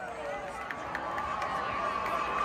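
An outdoor stadium crowd talking and milling about, with a few short sharp taps. A steady high note comes in about a second in.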